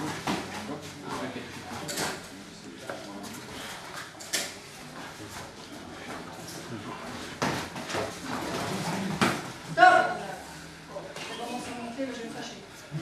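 A few sharp thuds from gloved blows during a savate bout, spaced a couple of seconds apart, over voices in the hall; a short call stands out about ten seconds in.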